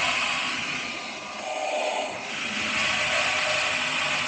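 Water softener control valve going into a manual regeneration, its drive motor and gears running with a steady noise that dips briefly about a second in and then picks up again.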